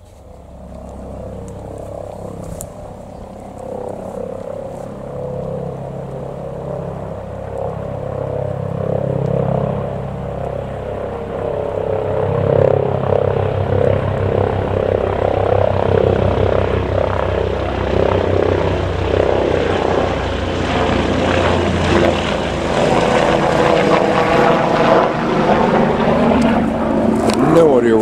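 Helicopter flying over close by: its rotor and engine noise builds steadily over the first dozen seconds and then stays loud, with a fast, even rotor beat running through it.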